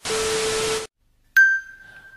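A burst of TV static hiss lasting just under a second, with a steady low tone running through it, cut off abruptly. After a short silence comes a single bright ding that rings on and fades.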